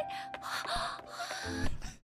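Breathy gasping over a steady held tone of background music, with a short voiced sound near the end before the audio cuts off abruptly.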